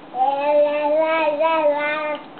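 A baby singing one long, held 'aah' note that wavers slightly in pitch for nearly two seconds, a sing-along vocalisation.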